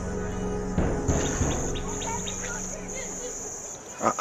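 Crickets trilling in high, repeated trills of about half a second each. Under them, sustained low background-music notes fade out over the first three seconds, with a single soft hit about a second in.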